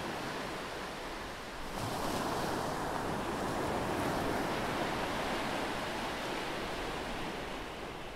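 Steady, surf-like rushing noise: the 'sound of the sea' of a large spiny seashell held to the ear. It swells about two seconds in and eases off near the end.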